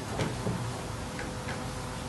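A few light clicks and taps from a plate being handled on a steel kitchen counter, over a steady kitchen background hum.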